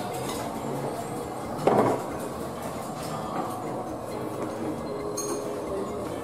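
Dishes and cutlery clinking over a steady background hum at a meal table, with one brief louder sound just under two seconds in.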